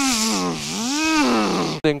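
A man's wordless, sing-song vocalizing that slides up and down in pitch, over the steady hiss of a pressure-washer lance spraying foam. Both cut off abruptly near the end.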